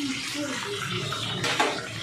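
Gas stove burner flame hissing steadily while meat is roasted over the open flame, with a brief clatter about one and a half seconds in.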